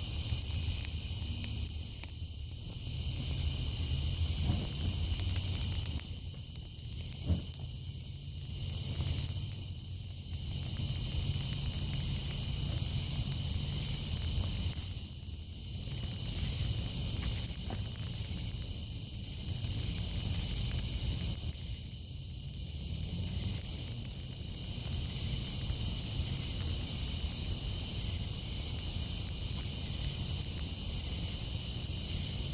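Football jersey burning in a fire: a steady low rumble of flames with scattered crackles and one sharp pop about seven seconds in. A steady high chirring of night insects runs underneath.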